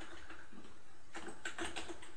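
Keystrokes on a computer keyboard, a short run of key clicks in the second half.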